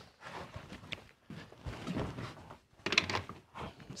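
Scattered handling noises in a small room: irregular light knocks, clicks and shuffling as a person moves about and picks things up.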